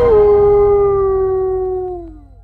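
A long, drawn-out canine howl in a Halloween intro soundtrack, held on one pitch, then sliding down and fading away near the end.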